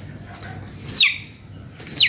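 A chick peeping twice, two short, sharp calls falling in pitch about a second apart, while its sore eye is being wiped.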